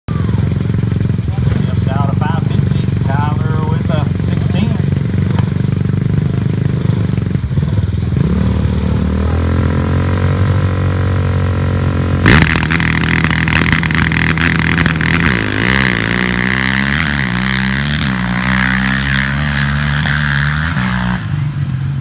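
A Kawasaki KFX450 ATV's single-cylinder four-stroke engine and a side-by-side UTV idle at the drag-strip start line, then rev up. About twelve seconds in, the sound jumps suddenly louder as both launch at full throttle. Their engines rise and fall in pitch as they pull away and fade near the end.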